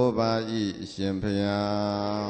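A man chanting Buddhist verses in a slow, drawn-out style. A phrase slides down in pitch, breaks off briefly, then the voice holds one long, steady note.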